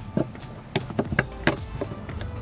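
Screwdriver prying at the plastic wiring connectors on a car's fuel pump flange: a handful of short, irregular clicks and taps as the locking tabs are worked loose.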